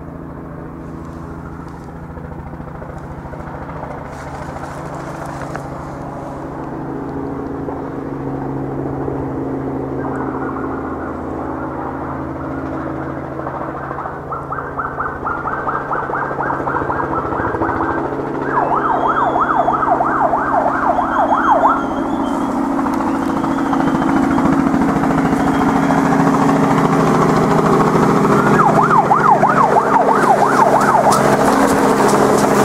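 Helicopter approaching, its engine and rotor growing steadily louder, with a fast pulsing beat that comes in about a third of the way through.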